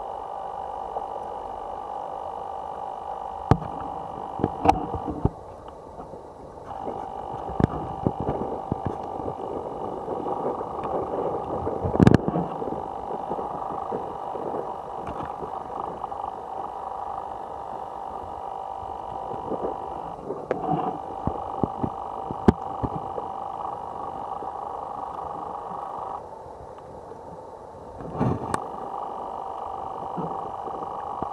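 A steady machine-like hum of several held pitches, cutting out abruptly for a second or two three times, with scattered knocks and clicks and one loud knock about twelve seconds in.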